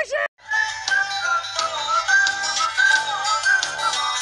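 Music with an electronically processed singing voice carrying a wavering melody, starting after a brief break about a third of a second in.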